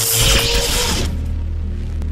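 Intro sound design over music: a loud crackling burst, like electricity, over the first second, fading into a low steady bass drone as the logo settles.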